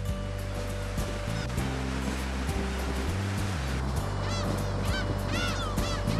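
Gulls calling in short, arched, repeated cries that start about four seconds in, over a steady rush of water from a boat's wake.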